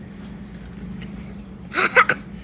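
A child's brief voiced cry near the end, his reaction to biting into a hot chicken wing, over a steady low hum of the room.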